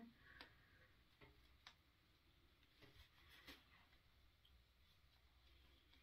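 Near silence, with a handful of faint, soft ticks in the first few seconds as hands bunch and work shorts fabric along a drawstring threader inside the waistband.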